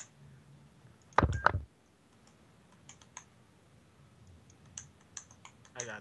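Scattered clicks of a computer keyboard and mouse as cards are picked in the game, with one loud thump a little over a second in.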